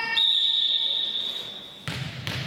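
A referee's whistle blown in one long, steady, high-pitched blast that fades out over under two seconds, the signal for the next serve. Near the end comes a single sharp knock with a short echo in the gym.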